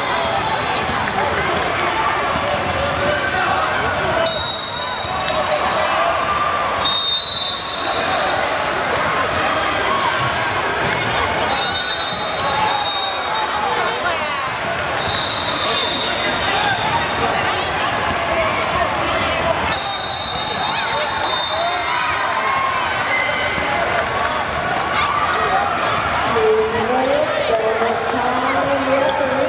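Gym noise during a youth basketball game: a steady chatter of voices, a basketball bouncing on the hardwood floor, and about six short high-pitched squeals spread through it.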